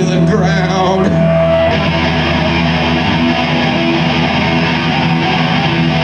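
Live punk band playing: electric guitars holding loud, steady sustained chords over the amplified band.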